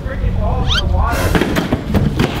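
Young men yelping and laughing in startled surprise: a rising shriek a little before a second in, then a harsher burst of shouting.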